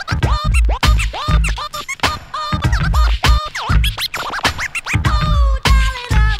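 DJ scratching a record on a turntable: a sampled sound dragged back and forth so that its pitch slides up and down in quick, chopped strokes, over a beat with a heavy bass drum.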